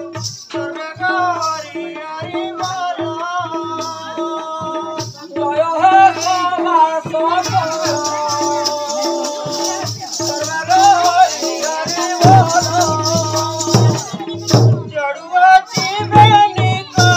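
Live Odia danda nacha folk music: a wavering melody line over a steady barrel-drum beat and continuous rattling percussion. The drumming grows louder in the last few seconds.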